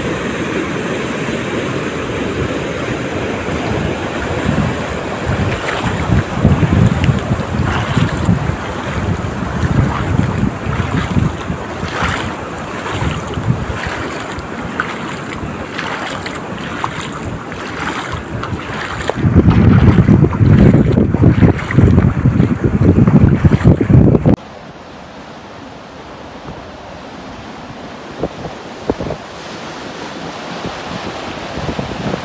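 Muddy floodwater rushing fast in a torrent, with wind buffeting the microphone, loudest a little past two-thirds of the way through. About 24 seconds in the sound drops suddenly to a quieter, duller rush of water.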